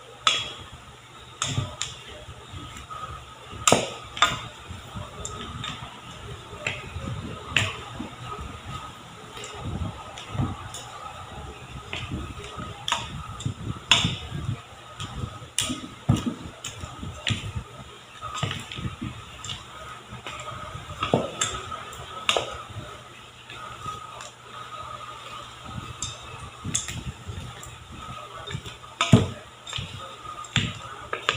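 Wooden spoon working stiff cookie dough studded with chocolate chips and walnuts in a stainless steel bowl: a low scraping rustle with irregular knocks of the spoon against the metal, a few of them louder.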